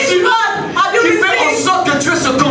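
A man's voice preaching through a microphone, speaking continuously with a short pause a little under a second in.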